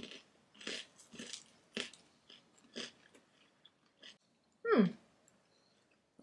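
Crunching and chewing of crispy air-fried waffle-cut potato snacks, in short crisp bites roughly every half second. Near the end comes a single 'mm' that falls in pitch.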